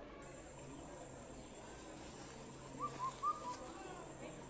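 Faint outdoor ambience with a bird giving three or four short chirps about three seconds in.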